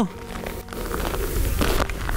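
Low wind rumble on the microphone, growing stronger about a second in, with faint background music underneath.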